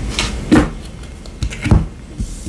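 Tarot cards being turned over and laid down on a table mat by hand: two soft taps, about half a second in and again near the end.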